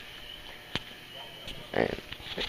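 Quiet background hiss with a faint steady high-pitched tone, broken by a single sharp click a little under a second in.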